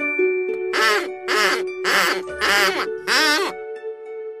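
A cartoon rabbit's squeak, five short wavering squeaks about half a second apart, over a children's song backing with held keyboard-like tones.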